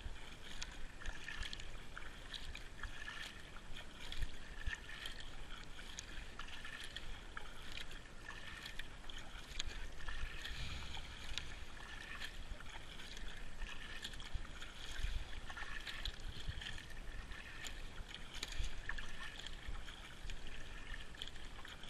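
Kayak paddle blades dipping and pulling through calm water in a steady run of strokes, with splashes and drips from each blade.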